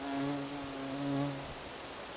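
A bumblebee buzzing in flight: a low hum lasting about a second and a half that swells twice.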